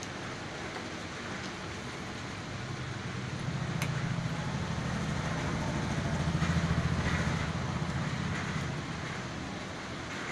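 Low engine hum of a passing road vehicle, swelling over a few seconds and then fading away, over a steady background hiss.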